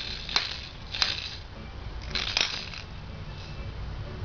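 Two hard plastic toy rings banged together by a baby's hands, a few irregular clacks in the first half, the last two close together.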